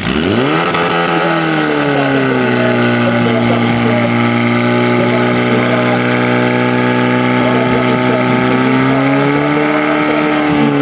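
Portable fire pump's engine revving up steeply in the first second or two, then held at high, steady revs while it pumps water out to the attack hoses.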